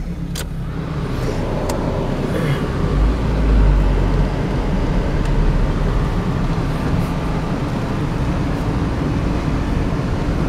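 Engine and road noise of a Toyota Corolla heard from inside its cabin while driving: a steady low rumble that swells for about a second around three seconds in. A few faint clicks sound over it.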